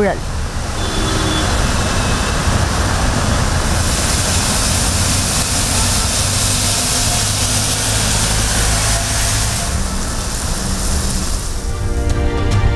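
Rain falling on a wet city road with passing traffic: a steady hiss of rain and tyres over a low traffic rumble. The hiss grows stronger about four seconds in and eases again near ten seconds.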